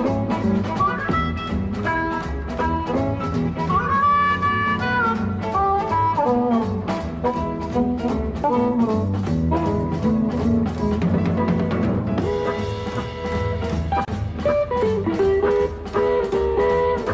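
Chicago blues band playing an uptempo boogie: guitar, double bass and drums keep a steady beat while a lead line slides and bends in pitch.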